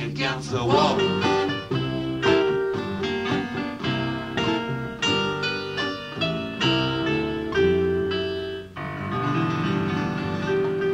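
Acoustic guitar picking chords in an instrumental passage of an acoustic song, with a held, wavering sung note ending about a second in.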